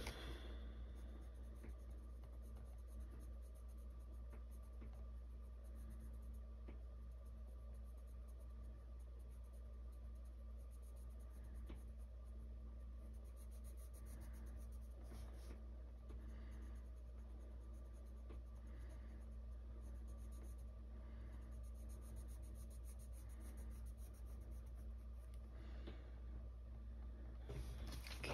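Colored pencil scratching softly across a coloring-book page in short, repeated shading strokes. A steady low hum runs underneath.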